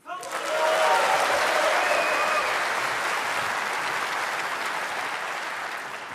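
Audience applauding, breaking out suddenly and slowly dying away, with a few shouts and cheers in the first couple of seconds.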